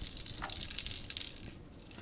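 Empty capsule bodies rattling on the plastic loading tray of a manual capsule filling machine as the tray is shaken by hand to settle them into its holes: a rapid patter of light clicks, densest about half a second in, then thinning out.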